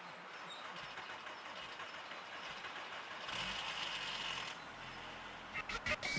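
Volkswagen Golf estate being started in the cold: the starter cranks for about a second, three seconds in, and the engine then keeps running quietly. A few clicks come just before the end.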